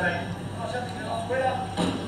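Indistinct speech in a reverberant room, over a steady low hum.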